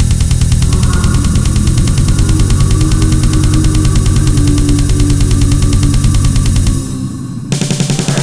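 Rock band playing loud and fast, driven by a rapid, even drum beat. Near the end the band drops back for about half a second, then crashes back in.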